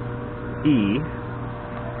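Steady hum of a Monarch manual lathe's electric drive running, a few even tones holding level throughout; a man says "E" about half a second in.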